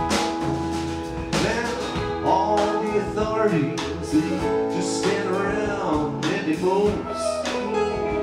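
Live band playing a slow blues-rock song: sustained keyboard chords and drums under a lead line of bending notes.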